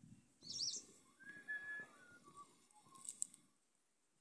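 Wild birds calling, faintly: a quick high chirp about half a second in, then a whistled note that falls in pitch in steps, and another sharp high chirp near the end, over a soft low rustle.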